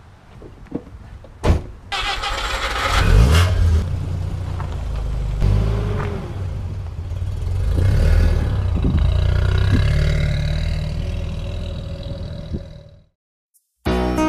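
A convertible car's engine, after a couple of sharp clicks, starting about two seconds in and revving, then running with a low rumble that swells and eases before fading out near the end.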